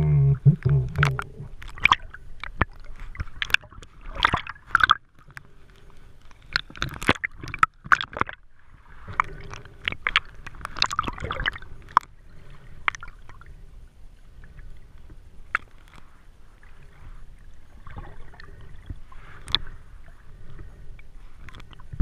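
Water sloshing and gurgling around a camera held underwater while snorkeling, with many scattered sharp clicks and crackles, busiest in the first half.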